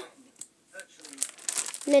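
Plastic pocket pages of a trading-card binder crinkling as a page is turned, the rustle building from about a second in.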